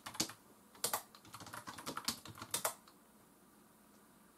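Keystrokes on a computer keyboard: an uneven run of quick taps for almost three seconds, then they stop.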